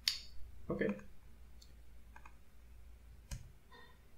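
A few isolated clicks from computer input at a desk: a sharp one right at the start and another a little after three seconds, with fainter ones between, over a steady low hum.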